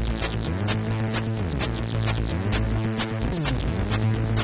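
Electronic music: a low throbbing synth tone that swoops down and back up about every second and a half, under a fast run of high ticking hits.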